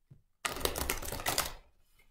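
A deck of oracle cards being riffle-shuffled by hand. About half a second in comes a rapid burst of card clicks lasting about a second.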